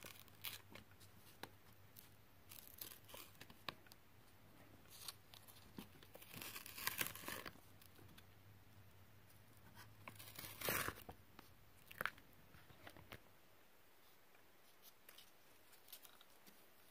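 Paper masking tape being peeled slowly off watercolour paper: faint, intermittent ripping and crackling, with a longer rasp about six to seven seconds in and a sharper rip near eleven seconds.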